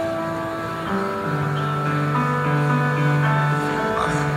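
Live band playing an instrumental passage with no vocals: slow, sustained chords over a low held note that shifts about a second in.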